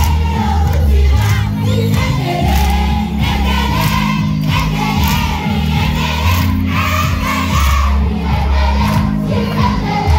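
Loud amplified music with a heavy bass line, over a large crowd of schoolchildren singing and shouting along.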